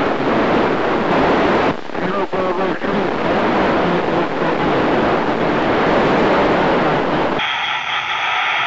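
FM radio receiving the ISS crossband repeater downlink: loud static hiss with faint, garbled voices in it, which cuts off abruptly about seven seconds in.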